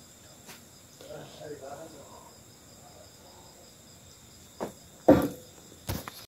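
Crickets chirping steadily in the background, with faint voices. Near the end come two sharp knocks, the second louder.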